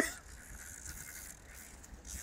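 Fishing reel being cranked: a faint, steady mechanical winding sound.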